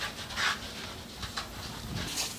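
A burning house's ruins crackling with scattered sharp pops, over a steady hiss, with a short louder hiss about half a second in.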